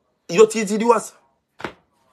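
A man's voice in one brief utterance of under a second, followed a little later by a single short click.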